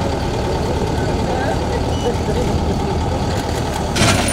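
Diesel engine of a Caterpillar backhoe loader running steadily while the machine works, with people's voices over it.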